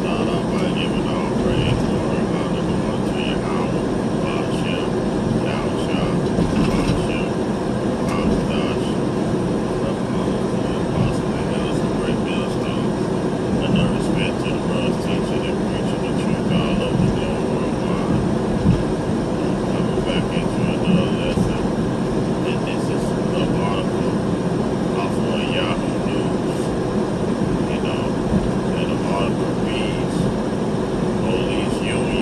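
Steady road and engine noise heard from inside a vehicle's cab at highway speed, with a muffled voice coming and going over it.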